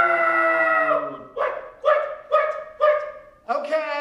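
A man's voice through a handheld megaphone, vocalizing without words: a long held note that slides down in pitch, then a run of short pitched yelps, about two a second.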